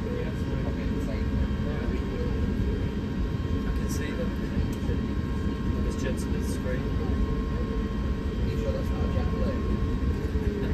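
Steady cabin noise inside an Airbus A350-1000 airliner taxiing: a low rumble from the engines and air system with faint steady tones, and a few light clicks about four and six seconds in.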